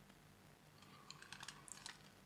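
Near silence, with a scatter of faint small clicks through the second second.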